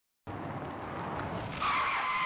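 A tyre-screech sound effect: a noisy rush, then a loud high skid squeal from about one and a half seconds in.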